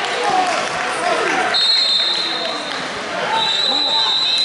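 Several voices shouting over one another in a large, echoing hall: coaches and spectators yelling at a wrestling bout in progress. A thin, steady high tone comes in twice behind the voices.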